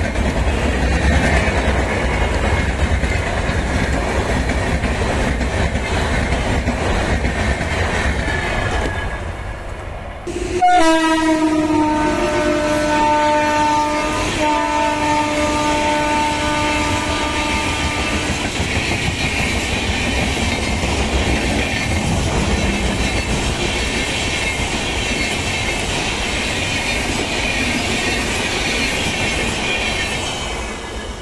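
Indian Railways passenger coaches rushing past, their wheels clattering and rumbling on the track. About ten seconds in, after an abrupt cut, a train horn sounds one long blast of about seven seconds over the passing coaches.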